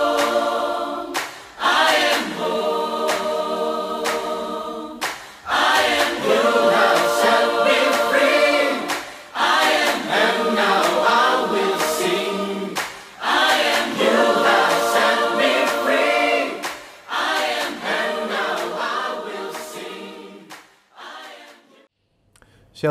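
Choir singing sustained chords in a series of phrases, fading out near the end.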